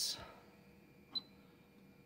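A single button press on a Schneider Conext SCP control panel, a short click with a brief high tick, a little over a second in; otherwise faint room tone.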